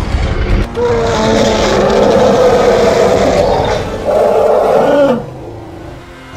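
Lion snarling and roaring over a music score, in loud, drawn-out snarls that drop away sharply about five seconds in.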